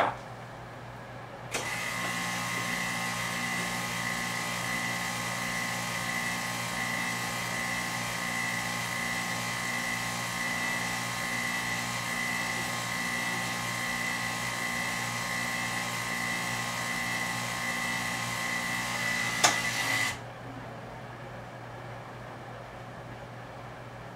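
Buon Vino tabletop bottle filler's electric pump running steadily with a high whine over a low hum, pumping wine up from a carboy into a bottle. It starts about a second and a half in and cuts off near the end, once the bottle is full, with a short click just before it stops.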